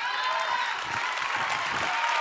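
Congregation applauding and cheering, a steady wash of clapping that swells in at the start.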